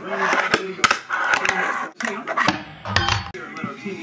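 Fingerboard clacking on a wooden desk and rail: a string of sharp clicks and clacks as the board is popped and landed, with a brief low thud about three seconds in.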